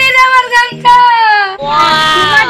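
A child's voice singing long, drawn-out, wavering notes, three held tones one after another, over a background music track.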